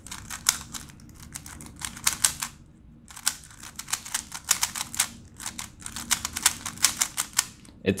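GAN 354 M magnetic 3x3 speedcube turned rapidly one-handed: dense runs of plastic clicks and clacks as the layers snap through turns, with a brief pause about two and a half seconds in. The cube is set up too loose and dry, so turns overshoot.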